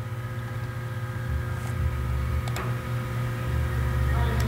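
Steady low machine hum with a few faint clicks about halfway through.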